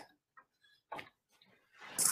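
A quiet pause broken by a few short, faint clicks, one at the start and another about a second in, then a brief hiss near the end.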